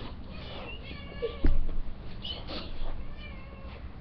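Pet cat meowing several times in short, high-pitched calls, with one loud thump about a second and a half in.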